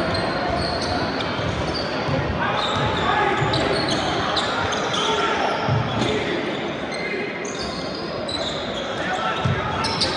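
Basketball game sounds in a large hall: the ball bouncing on the hardwood court and short high sneaker squeaks, over a steady background of indistinct voices.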